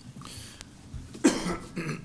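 A man coughs once, sharply, about a second in.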